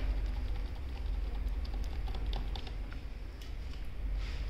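A few scattered taps on a computer keyboard, the F10 boot-menu key being pressed during startup to call up the boot menu, over a low steady rumble.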